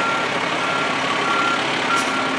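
Fire truck's reversing alarm beeping at an even rate, about three beeps every two seconds, over the truck's engine running as it backs up.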